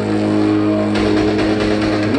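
Live rock band with a distorted electric guitar and bass holding one sustained chord that rings on steadily, rising in pitch right at the end.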